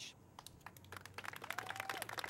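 Applause beginning: a few scattered claps about half a second in that grow quickly denser into steady clapping.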